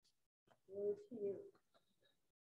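A faint, distant voice murmuring a short response, two brief sounds a little under a second in: the congregation's answer to the gospel announcement.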